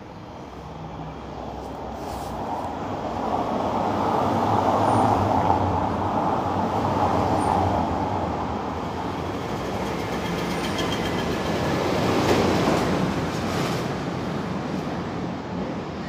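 Motor traffic passing close by on a narrow street: engine and tyre noise swells up over the first few seconds, eases, and swells again about twelve seconds in.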